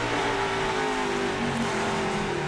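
NASCAR Nationwide race car's V8 engine heard through the onboard camera, its note drifting slowly lower as the car eases off.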